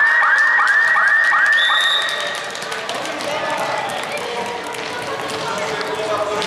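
A siren-like electronic signal of about five quick rising swoops, each climbing to the same held high note, in the first two seconds. It is the signal for the end of the match, and a steady hubbub of voices in a sports hall follows.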